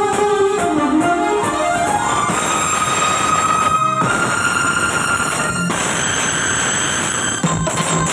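Alto saxophone playing a melody: a quick run of notes falling and then rising, followed by three long held high notes, over loud band accompaniment.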